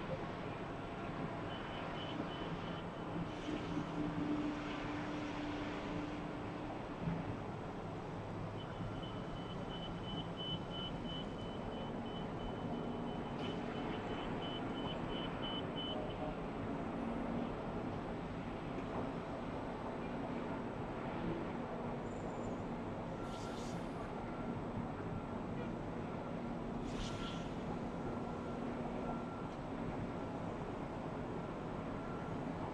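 Distant road traffic, a steady outdoor hum of vehicles heard from high above. A faint, rapid high beeping comes a couple of seconds in and again from about 9 to 16 seconds, and two brief hisses come near the end.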